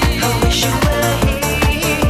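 A mid-1990s electronic dance track playing: sustained synthesizer tones over a steady, even kick-drum beat.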